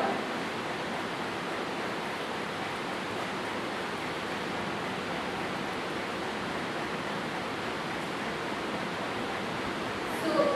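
A steady, even hiss of background noise with no speech and no separate events, its level unchanging throughout.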